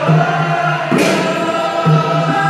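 A group of men chanting together in a sustained, drawn-out mawlid devotional chant, with two sharp beats, one about a second in and one near the end.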